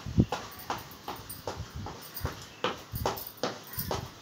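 Footsteps of a person running in place on a hard floor, quick irregular thuds about three a second.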